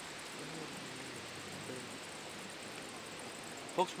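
Steady outdoor background hiss, with faint voices in the distance. A man's voice cuts in briefly near the end.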